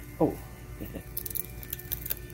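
A short spoken "Oh", then a quick run of small sharp clicks and crackles in the second half as a dog works at a peanut in its shell on the pavement.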